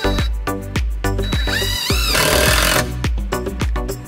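Background music with a steady beat, with a cordless drill running in a short burst about halfway through, driving a screw into the wooden frame.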